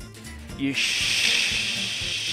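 Chopped vegetables and bacon sizzling as they go into a hot frying pan. The sizzle starts suddenly about a second in and then holds steady.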